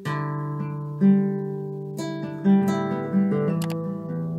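Nylon-string classical guitar played fingerstyle, moving through a chord progression. Chords are plucked about once a second and left ringing over a low bass note, with a few quick sharp strokes near the end.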